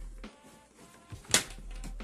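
Faint background music with one sharp knock about a second and a half in, from an arm reaching over the table.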